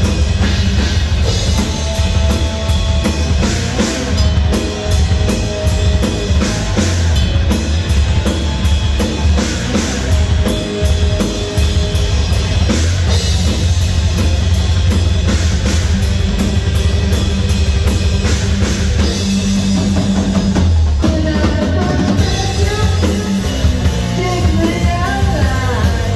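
Live rock band playing loud: drum kit, electric guitars and bass, with a brief change in the sound a little before the end.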